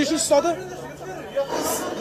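Speech only: people talking over one another.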